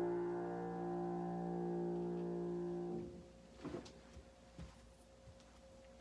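Piano holding the last chord of a chord progression played with the bass doubled, ringing steadily until it is released about halfway through. After that come a few faint knocks and rustles.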